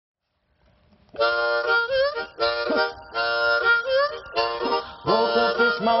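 Blues harmonica playing short chordal phrases with notes bent upward, starting about a second in after a moment of silence. A man's singing voice comes in right at the end.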